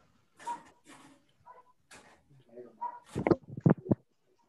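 Scattered voice sounds over a video-call connection, then three loud, short sounds in quick succession near the end.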